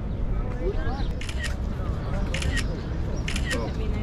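Smartphone camera shutter sound clicking three times, about once a second, as photos are taken.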